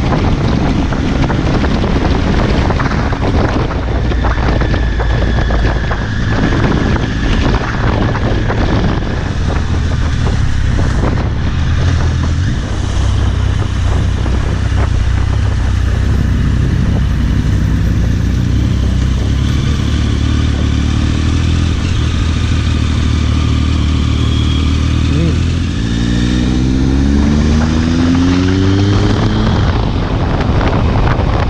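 Triumph Speed Triple 1050's three-cylinder engine running on the move, heard from the rider's seat over wind noise. Near the end the revs climb steadily as the bike accelerates.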